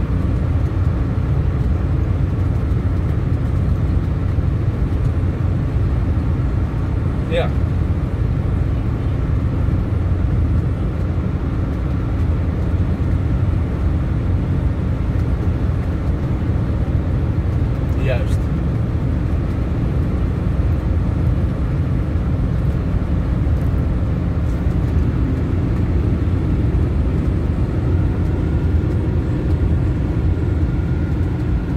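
Steady road and engine noise inside a car's cabin at motorway speed, a constant low rumble. Two brief, thin high sounds cut through it, about seven and eighteen seconds in.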